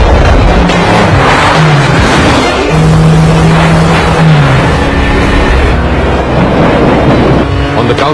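Film car-chase soundtrack: car engines racing at speed, mixed with background score, loud and continuous.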